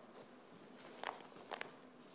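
Soft rustles of Bible pages being turned and handled at a pulpit: two brief sounds, about a second in and again half a second later, over quiet room tone.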